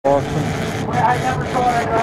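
A boat's engine running steadily, with indistinct voices over it.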